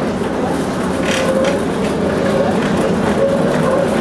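Tram running, heard from inside the passenger car: a steady rolling noise of wheels on rails, with a faint wavering whine.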